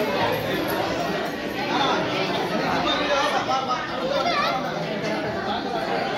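Many voices of women and children talking over one another at once: steady, unbroken chatter with no single voice standing out, a few higher children's voices rising and falling about four seconds in.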